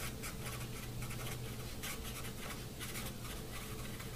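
A felt-tip marker writing on paper, a quick run of faint strokes of the tip across the sheet as a short phrase is written out, over a steady low hum.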